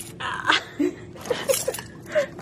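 A woman giggling in a few short, breathy bursts with brief high blips of voice.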